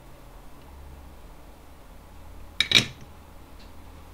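A tool set down or tapped on a hard surface with a short, sharp clink (two quick strikes together) about two-thirds of the way through, over a low steady hum.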